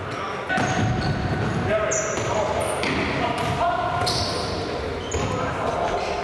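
Futsal ball being kicked and bouncing on a hard sports-hall floor, with players' voices calling out, all echoing in a large hall; the sound picks up about half a second in.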